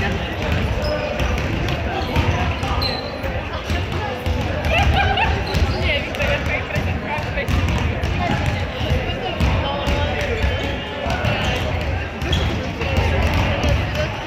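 Basketballs bouncing irregularly on a wooden gym floor, with voices talking in the hall.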